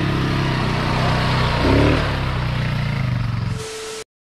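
Small ATV engine running steadily as the quad is ridden round the track.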